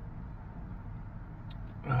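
Steady low hum inside a parked pickup truck's cabin.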